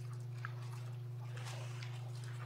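Room tone dominated by a steady low electrical hum, with a faint tick about half a second in and a few faint rustles.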